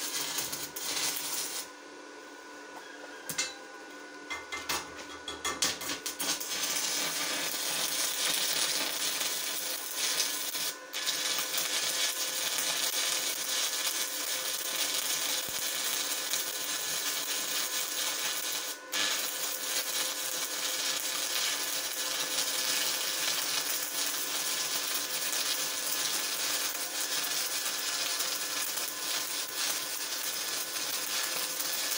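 Stick (MMA) welding arc crackling and hissing as a UONI-13/55 electrode is run on rusty steel on a DEKO 200 inverter welder. Near the start the arc dies away for about two seconds, then restrikes with a sputter before settling into a steady crackle. It drops out briefly twice more later on.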